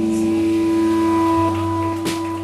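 Live shoegaze band holding a sustained, droning chord on guitars and bass, the notes ringing steadily. The bass note shifts about three-quarters of the way through.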